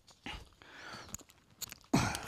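Scattered light clicks and rustling of rappelling gear and rope being handled in gloved hands.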